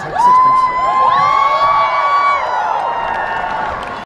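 Large arena crowd cheering and screaming, breaking out about a quarter second in with many high voices rising and held together, then slowly easing off.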